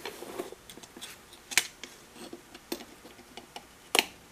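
Scattered small clicks and taps of a digital caliper being slid and set against the wheel of a metal hand fender-rolling tool. There is a sharper click about a second and a half in, another near three seconds, and the loudest one at the very end.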